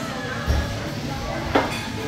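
Restaurant dining-room background: faint voices and a clink of dishes. A low thump comes about a quarter of the way in, and a sharp clink near the end.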